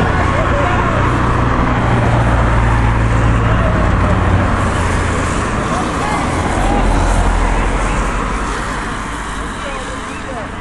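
Open-air ambience at a grass football pitch: a loud, steady low rumble with faint distant shouts from the players over it, easing off slightly near the end.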